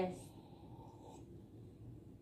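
A short spoken word right at the start, then faint rustling of a white duvet being handled as a bed is made.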